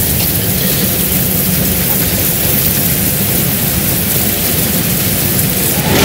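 A swarm of insects crawling over a body, heard as a loud, steady, dense hiss like heavy rain.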